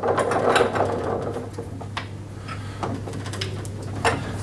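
Spanner tightening a nut onto a lawnmower's plastic front wheel: a rapid run of small clicks and rattles, busiest in the first second.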